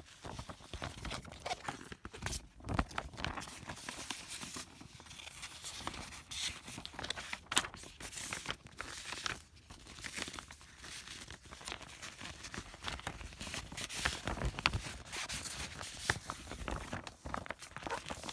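Paper documents and clear plastic binder sleeves rustling and crinkling as papers are handled and slid into a sheet protector, with many sharp crackles throughout.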